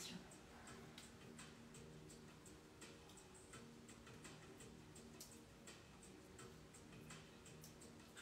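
Near silence: room tone with a faint, regular ticking of about two ticks a second over a faint low hum.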